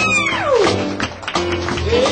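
Live soul band music: one long sung note slides steeply down in pitch near the start, over bass and drums.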